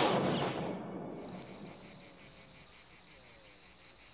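The tail of the title music fades out in the first second, then crickets chirp steadily in a high, fast-pulsing trill.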